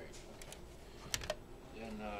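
A few sharp plastic clicks and knocks from handling a portable cassette boombox and its shoulder strap as it is lifted: one pair about half a second in, then two louder clicks close together just past a second.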